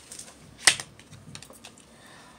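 Tarot cards being handled: a few light card clicks and one sharper snap about two-thirds of a second in, as a card is pulled from the deck and laid down.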